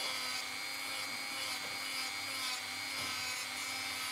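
Dremel 3000 rotary tool on its flexible shaft at speed six, running a 120-grit sanding band lightly over a resin and wood piece: a steady, even high whine.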